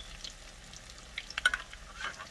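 Salmon croquettes frying in hot oil in a cast iron skillet, a steady sizzle with scattered crackles. A quick cluster of sharp clicks and pops comes a little past halfway.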